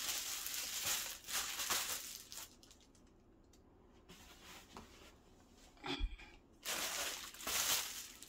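Plastic bubble mailer crinkling and rustling as it is handled for the first couple of seconds, then quiet. A soft knock comes about six seconds in, followed by two more short bursts of crinkling near the end.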